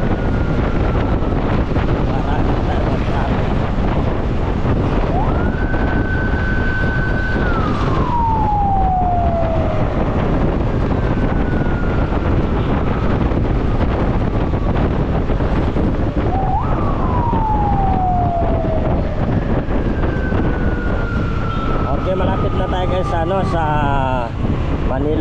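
Ambulance siren wailing: it rises, holds a high tone, then falls away slowly, loudest about 5 s and 16 s in, with fainter falling tones between. Under it runs steady wind and road noise on the microphone of a moving motorcycle.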